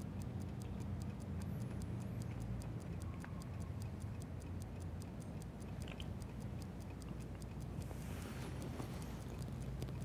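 Clock ticking steadily in a quiet room over a low hum. Near the end there is a soft sip from a mug.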